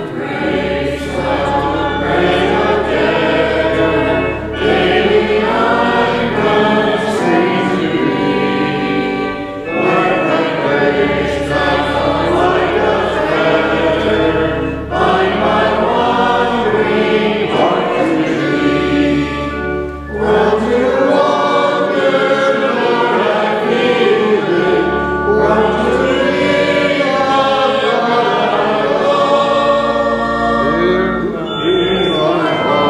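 Voices singing a hymn together over held organ chords and low sustained pedal notes. The singing comes in phrases of about five seconds with brief breaths between them.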